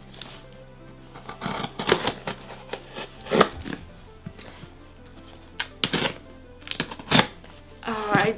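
A cardboard parcel's packing tape being scraped and picked at, giving a string of short, sharp scratching and rustling sounds, over soft background music.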